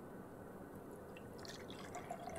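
Faint pouring of water from a glass cup into a bottle, with a few small splashes in the second half.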